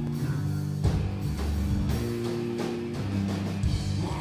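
Live rock band playing an instrumental passage: distorted electric guitars holding low chords, which change about once a second, over a drum kit with sharp hits every second or two.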